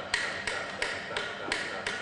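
A steady series of sharp taps, about three a second, each with a brief ringing tone.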